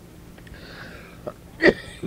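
A man drawing breath in a pause in his talk, over steady cassette-tape hiss, then a brief throat sound near the end. He has a lingering cough and an irritated throat.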